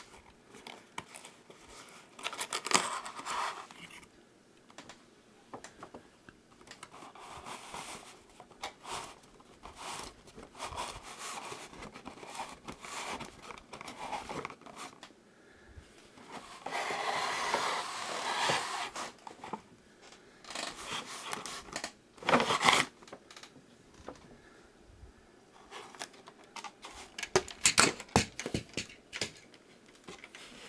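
Cardboard packaging being handled as a boxed model truck is pulled out of its shipping box: irregular scraping, rubbing and rustling of cardboard. A longer rustle comes a little past the middle, a short loud scrape soon after, and a cluster of scrapes near the end.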